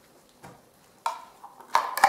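Cut pieces of plastic square downpipe knocking and clacking as they are handled and set down on a board. There is a faint knock about half a second in, then a sharp clack at about one second and a few more near the end.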